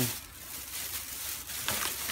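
Thin plastic shopping bag rustling and crinkling softly as hands rummage inside it.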